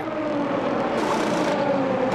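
A race car's engine note, falling slowly in pitch as it runs past on the circuit. A brief burst of hiss comes about a second in.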